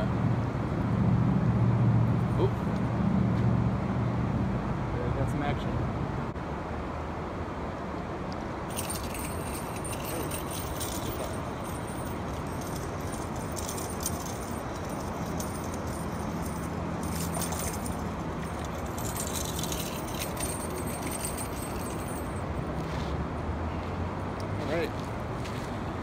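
Spinning reel being cranked to bring in a fish, with fast, irregular clicking and rattling from about a third of the way in until a few seconds before the end, over a steady background hum.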